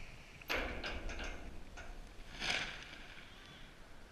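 A BASE jumper leaving a steel bridge and his parachute deploying below: a sudden loud rush about half a second in, a few short knocks and rustles, then a second loud rush of the canopy opening about two and a half seconds in.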